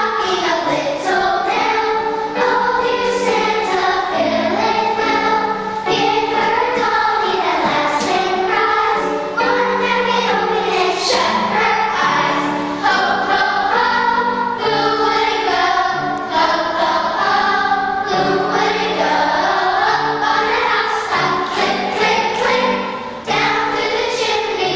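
Children's choir singing a song, the voices continuous and full throughout.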